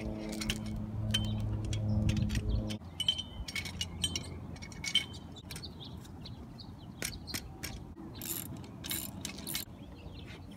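Sharp clicks and clinks of metal hardware as a steel antenna mast and its roof mount are handled and fastened, some clinks ringing briefly. A steady low hum runs under the first few seconds and stops suddenly.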